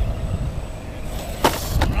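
Radio-controlled scale rock crawler tumbling off a boulder, its body and wheels knocking on the rock twice, sharply, about one and a half seconds in and again a moment later, over a low rumble of wind on the microphone.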